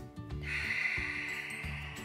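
A person's long audible exhale, starting about half a second in and fading away over about a second and a half, over backing music with a steady beat.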